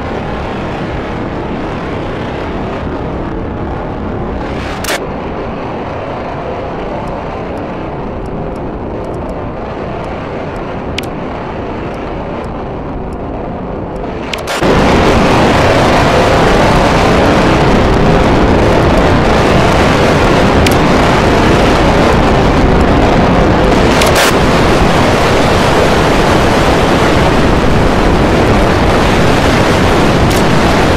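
A loud, dense roar of noise with no clear tune or pitch and a few sharp clicks. About halfway through it suddenly jumps much louder and brighter and stays that way.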